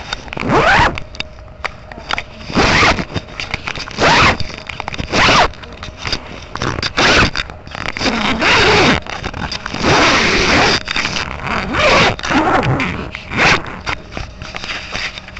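A series of about ten short rasping strokes, each under a second long, coming at irregular intervals.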